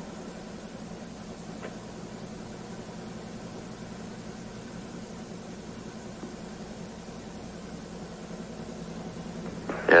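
Steady hiss with a faint low hum, the background noise of an old commentary audio feed. It holds even throughout, with no distinct event.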